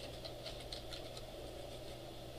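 Faint computer keyboard typing, a few light keystrokes over a steady low room hum.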